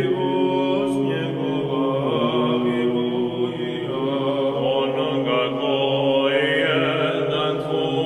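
Orthodox church chant: voices singing a slow melodic line over a steady, held low note.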